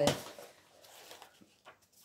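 Faint rustling of paper and a few light clicks as notebook pages are leafed through, after the tail of a spoken word at the start.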